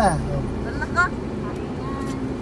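Car driving along a rough dirt track, heard from inside the cabin: a steady low rumble of engine and tyres.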